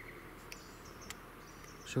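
Faint outdoor bush ambience: a rapid pulsed insect trill fades out at the start, followed by scattered faint high chirps and a couple of light clicks.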